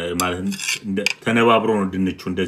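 A table knife cutting down through a slice of potato gratin and scraping across a glazed ceramic plate, in a few squeaky scraping strokes with a couple of sharp clinks of metal on the plate.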